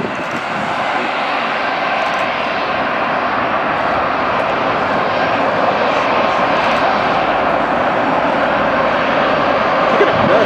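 Boeing 777 airliner's twin jet engines running as it taxis and turns onto the runway to line up for takeoff: a steady jet noise that grows slowly louder.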